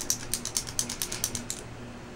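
Rapid ratchet-like clicking, about nine clicks a second, from a liquid eyeliner pen being handled. It stops about one and a half seconds in.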